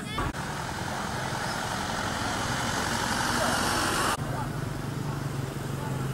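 A broad rushing noise that grows louder for about four seconds and then cuts off abruptly, followed by a steady low hum.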